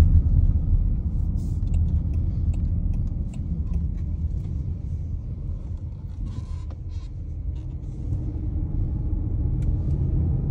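Car interior road and engine noise: a steady low rumble that eases a little in the middle, as the car turns left, then builds again.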